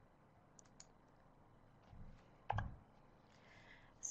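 Faint clicking of a computer mouse, a few small clicks and then one louder click about two and a half seconds in, as the presentation is advanced to the next slide.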